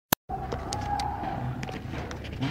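A sharp click as the recording begins, then street noise with a steady mid-pitched hum that fades after about a second, and a few faint clicks.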